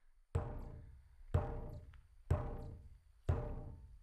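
Large hide hand drum struck in a slow, steady beat, four deep booms about a second apart, each ringing out and fading before the next.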